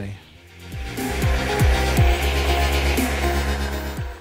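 Bench belt sander running, with a steady motor hum and the hiss of the abrasive belt grinding the end of a piece of timber. The sound builds up during the first second.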